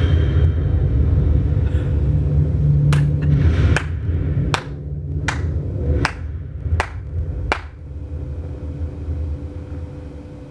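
Deep low rumble from the film's soundtrack, fading out over the last couple of seconds. Over it, a single person claps slowly and evenly, seven claps a little under a second apart.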